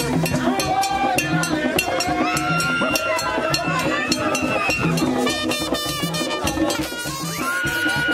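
Haitian chanpwel band music: drums keeping a steady repeating beat with shaken rattles, under group singing.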